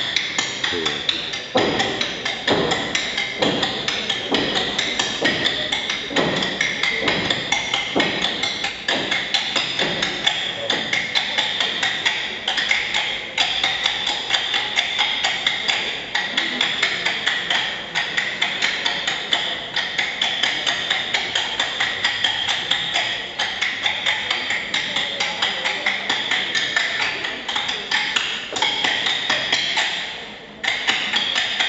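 Wooden drumsticks clacked together by several players in a fast, steady percussion rhythm: sharp dry clicks several times a second.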